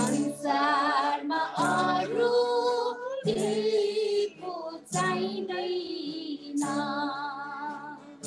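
A high solo voice singing a devotional song in phrases with a wavering vibrato, over sustained acoustic guitar chords, heard through a video call.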